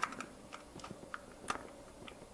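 Faint small clicks and ticks of plastic parts being handled and pressed on an H0 model locomotive, about eight irregular clicks with the loudest at the very start and another about halfway through.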